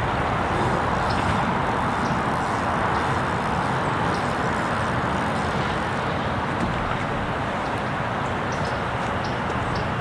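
Steady rushing noise of road traffic, unchanging, with a few faint light ticks over it.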